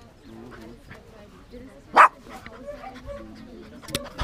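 A puppy barks once, short and sharp, about two seconds in, over faint voices. A brief click comes near the end.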